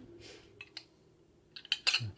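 A few light clicks and taps of cutlery on a plate, the sharpest near the end.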